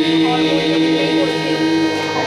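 A group of voices singing a Hindustani jhula in raag Mishra Tilak Kamod, holding one long note over a steady drone of the accompanying instruments.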